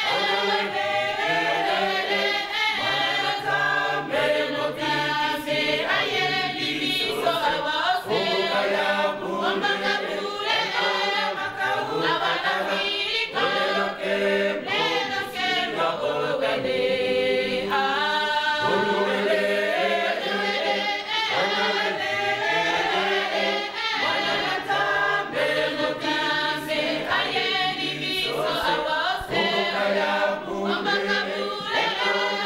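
A church choir, mostly women's voices, singing together.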